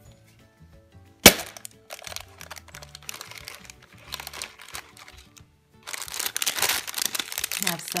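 A large plastic surprise egg snaps open with one sharp crack about a second in. Then foil candy packets rustle and crinkle as they are handled, loudest near the end.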